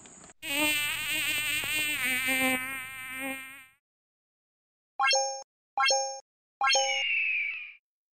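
Sound-effect logo sting: an insect buzz like a flying wasp, its pitch wavering, for about three seconds. After a short silence come three short chimes and a brief falling tone.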